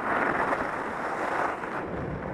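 Wind rushing over a helmet camera's microphone during a downhill ski run, a steady noise with no breaks.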